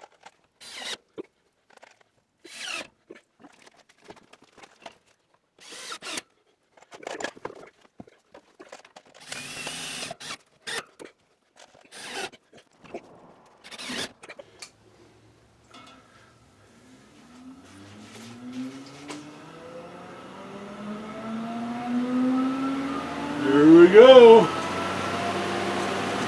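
A power drill runs in short bursts at the frame of an AC Infinity Airlift T16 shutter exhaust fan. About two-thirds of the way in, the fan's motor starts and spins up, its hum rising in pitch and getting louder, with a louder surge near the end.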